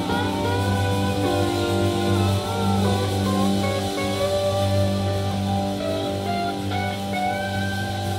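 Live band playing: guitars, bass and drums, with a lead line of bending notes over the top.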